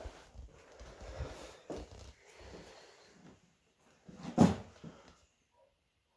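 Soft footsteps and handling rustle moving over bare wooden floorboards, with one short, much louder noise about four and a half seconds in, then a quiet spell near the end.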